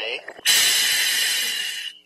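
Diver taking a deep breath through a scuba regulator in a full-face mask: the demand valve gives a loud, steady hiss lasting about a second and a half, fading slightly and stopping abruptly near the end.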